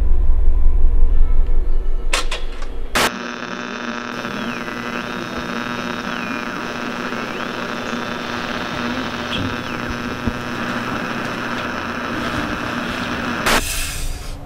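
Eerie trailer sound design. A deep rumble lasts about three seconds and stops abruptly, then a steady humming drone follows, with a held low note and high tones that slide up and down.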